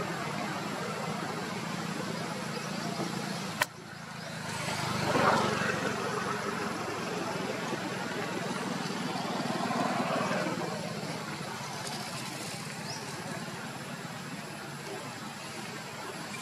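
Steady low engine hum of motor traffic, swelling as a vehicle passes about five seconds in and again more softly near the middle, with one sharp click shortly before the first pass.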